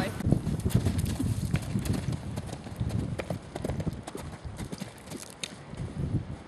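Hoofbeats of an Irish Draught cross Thoroughbred horse landing over a cross-country log fence and cantering on over grass, growing fainter as the horse moves away.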